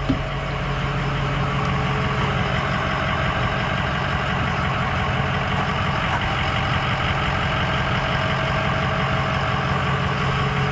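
Ford F-350's 6.0-litre turbo-diesel V8 idling steadily, a constant low hum.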